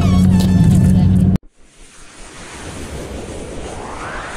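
A pop song with singing, used as background music, cuts off abruptly about a second and a half in. A rising whoosh sound effect then swells up, as an animated logo begins.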